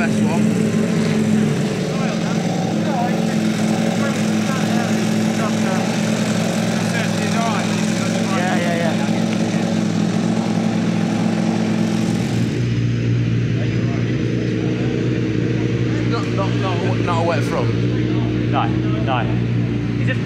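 An engine runs at a steady, unchanging pitch, with faint voices over it; the pitch of the drone changes at a cut about twelve seconds in.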